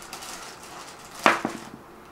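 Dice rolled onto a tabletop gaming board: one sharp clack a little over a second in, with a brief rattle after it.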